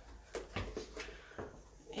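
Footsteps walking across an indoor floor: a few soft knocks about half a second apart.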